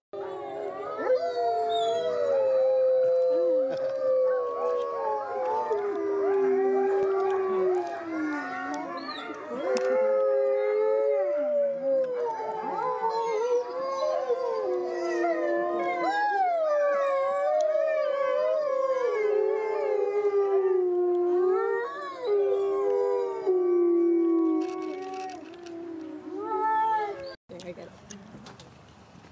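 Several wolfdogs (wolf–dog hybrids) howling together in a chorus: long, overlapping calls that rise and fall in pitch. The chorus thins out near the end and then cuts off suddenly.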